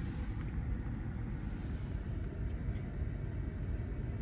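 Steady low rumble of a car, engine and road noise, heard from inside the cabin.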